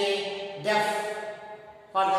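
A man's voice speaking with long, evenly held syllables, dropping off briefly just before the end.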